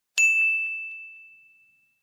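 A single bright ding sound effect, struck once and fading away over about a second and a half, used as the transition cue between slides.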